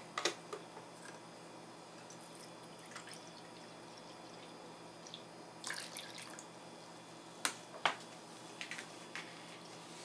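Water poured from a metal measuring cup into flour in a stainless steel bowl: a brief, faint splash about halfway through, then a few light clicks.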